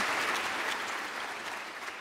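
Audience applause, fading steadily away.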